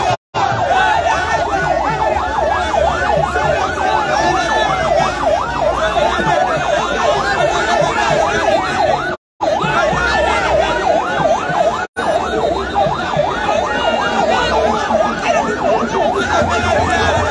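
Several sirens yelping at once over the continuous noise of a large crowd, the rapid rising-and-falling wails overlapping. The sound cuts out completely for a moment three times.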